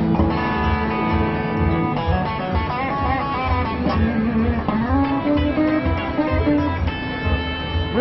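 Clean electric guitar played through a compressor-sustainer pedal for a country slapback sound: a ringing chord, then country-style single-note licks with string bends and sustained notes.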